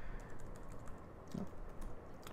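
Light, irregular keystrokes on a computer keyboard, a few faint taps as code is typed.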